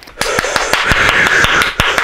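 A man laughing hard in breathy, wheezing bursts. Over the laughter runs a quick, irregular series of sharp taps, with a few heavier thumps.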